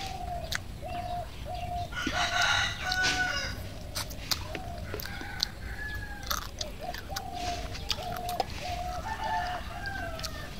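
Domestic chickens clucking in a steady run of short, same-pitched notes, about two a second, with a rooster crowing loudly about two seconds in.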